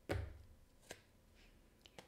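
Tarot cards being put down and tapped on a wooden table: a soft knock just after the start, then a lighter click about a second in and another small click near the end.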